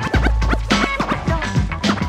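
Hip hop instrumental with turntable scratching: quick rising and falling scratches cut over a drum beat and a deep bass line.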